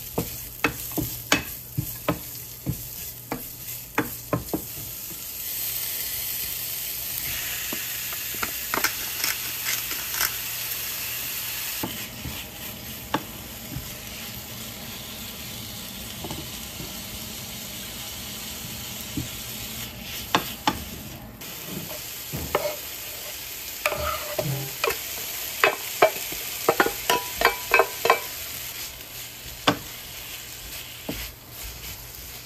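Food stir-frying in a frying pan: carrots, pork belly and vegetables sizzling in oil, with a wooden spatula stirring and knocking against the pan. The sizzle grows louder several seconds in, and the spatula knocks come thick and fast near the end.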